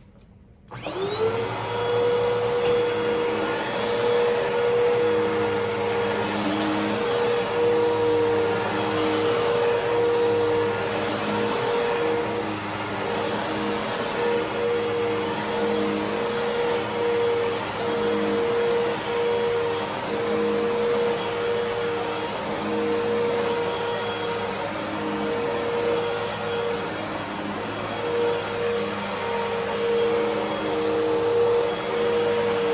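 Bagless upright vacuum cleaner switched on about a second in, its motor whining up to speed, then running steadily with a high whine as it is pushed across a rug.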